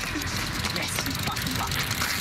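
Steady outdoor background noise with faint, indistinct voices.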